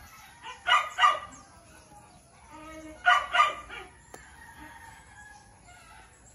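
A dog barking: two quick barks about a second in, then two more about three seconds in.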